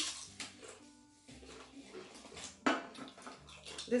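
Pringles potato crisps crunching as they are bitten and chewed: a few short crunches, the sharpest a little after halfway.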